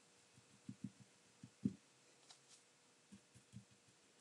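Faint, irregular soft taps of a dry paint brush pouncing paint onto a box along a taped stripe, a few of them a little louder about a second and a half in.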